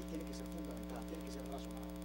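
Steady electrical mains hum in the recording, with faint, indistinct voices over it.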